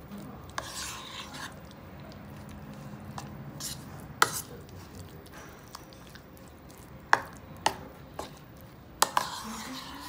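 A utensil stirring a thick chicken-and-mayonnaise mixture in a bowl: soft scraping and squishing, broken by several sharp knocks of the utensil against the bowl, the loudest a little after four seconds and just after seven.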